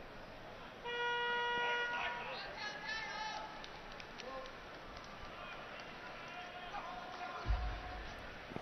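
A steady electronic buzzer sounds for about a second, followed by a short warbling whistle, over crowd noise in a wrestling arena.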